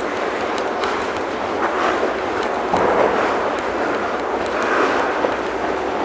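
Figure skate blades hissing and scraping on rink ice as a skater glides backward with side-to-side hip wiggles. The noise swells and eases a few times with the strokes.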